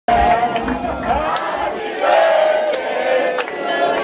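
A crowd of people singing a birthday song together, their voices held on long notes, with a few scattered claps.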